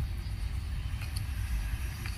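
Low, unsteady rumble of wind buffeting the microphone, with no clear pitch.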